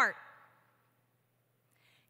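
A woman's voice at a lectern microphone: the last word of a sentence fades out over about half a second, followed by near silence. Near the end comes a faint intake of breath before she speaks again.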